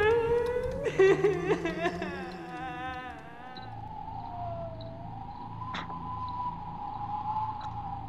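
Eerie horror-intro soundscape: ghostly wails glide and waver up and down, then settle into one long, wavering high tone over a low hum.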